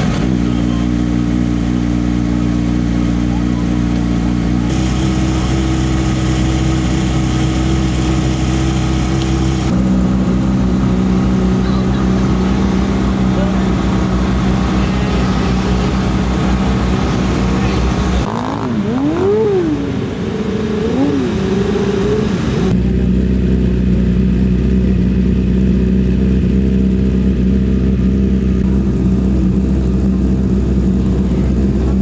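Race car engines running steadily, with the sound changing abruptly a few times. About 19 to 21 seconds in, an engine revs quickly up and down a few times.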